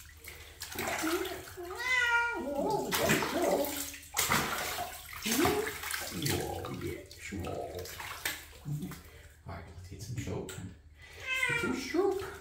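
Water splashing and sloshing in a bathtub as a Sphynx cat is bathed, with the cat meowing about two seconds in and again near the end.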